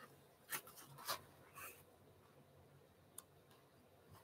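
Near silence with a few faint, brief rustles of paperback book pages being handled in the first two seconds, and a single tiny click about three seconds in.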